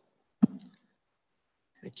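A single sharp click about half a second in, followed by near silence, then a man starts speaking just before the end.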